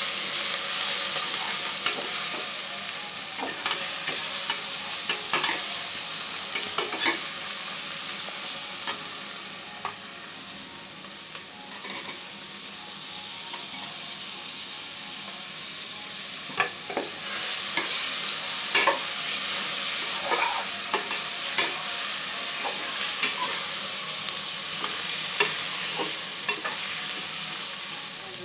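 Onions, green chillies and tomatoes sizzling as they fry in oil in an open aluminium pressure cooker. A steel spatula stirs and scrapes against the pot in irregular clicks. The sizzle is softer in the middle and louder again later.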